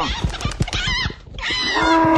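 Cartoon farm-animal sound effects: harsh animal cries in the first second, then a cow mooing starting near the end, over a rapid patter of knocks.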